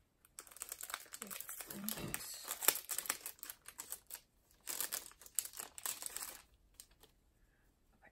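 Packaging crinkling and rustling as a set of cards is unwrapped by hand, in two spells of a few seconds each.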